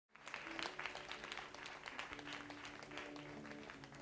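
Live concert audience applauding, dense clapping that thins toward the end, over soft held low notes as the band begins the song.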